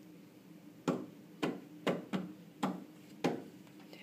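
Hand slaps on the closed wooden key lid of an upright piano, alternating left and right hands: six sharp slaps in an uneven rhythm, each with a short low ring from the piano's body.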